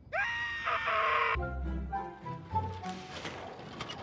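A cartoon character screams for about a second, then background music with a bass line takes over.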